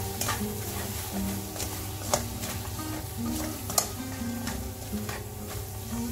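A spatula stirring and scraping thick black carrot halwa in a nonstick wok as sugar is worked in, with a light sizzle and a few sharper scrapes, the strongest about two and four seconds in. Background music plays throughout.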